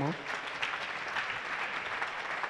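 A congregation applauding: many hands clapping in an even, steady spread.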